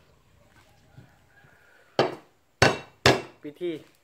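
A heavy kitchen knife striking eel meat on a round wooden chopping block: three sharp chops about half a second apart, starting about two seconds in.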